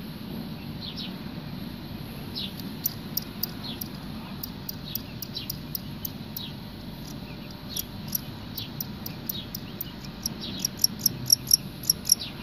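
Male fighting cricket chirping: short, sharp, high-pitched chirps, sparse at first, then coming faster and louder in the last couple of seconds.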